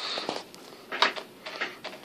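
Handling noise as the camera is moved about: a brief rustle, a light knock about a second in, then a few faint clicks.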